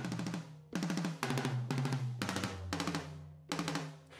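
Software drum kit played through a Maschine plugin, sounding very fast drum rolls in repeated bursts of about half a second each, with short gaps between them. The rolls are pitched and ringing like toms, over a low steady hum.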